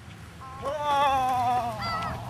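Gulls calling: one long call that sinks slightly in pitch, then a short call near the end.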